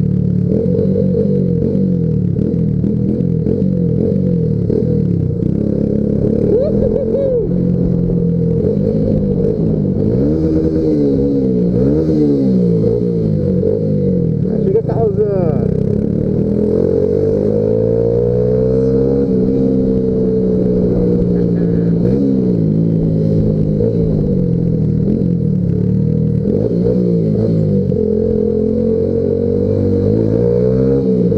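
Yamaha Factor 150 motorcycle's single-cylinder four-stroke engine running while under way. Its revs rise and fall over and over with throttle and gear changes.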